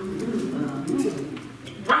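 Low, murmured voice sounds, soft and hum-like, in a pause between spoken phrases; a man starts speaking again near the end.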